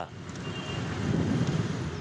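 Steady outdoor street noise: a low rumble of road traffic.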